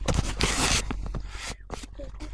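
Handling noise from a phone being moved around: a loud rustling scrape lasting about half a second in the first second, then a few light clicks and scuffs.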